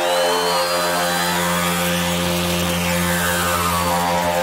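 Hardcore dance music in a breakdown: a held, buzzing synth chord with no drum beat.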